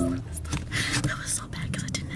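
Hushed whispering close to the microphone, with clothing rustling and small scrapes. Stage music breaks off just after the start.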